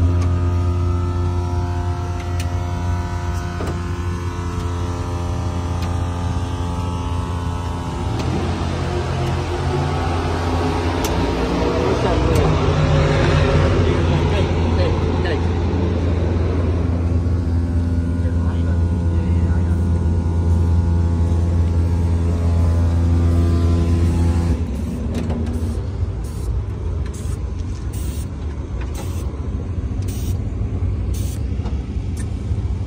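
An engine running steadily at one constant speed, a low, even hum that stops abruptly about 24 seconds in. Voices talk over it in the middle.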